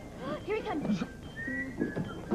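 A person whistling, a short, slightly rising note in the second half, after a few brief vocal exclamations.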